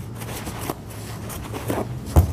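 Quiet room tone with a steady low hum and a couple of faint taps and rustles, about a second apart.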